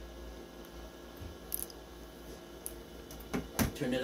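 Quiet room tone with a steady low hum, a few faint clicks, and a sharper click about three and a half seconds in.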